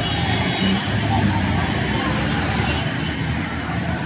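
Voices over a loud, steady background noise.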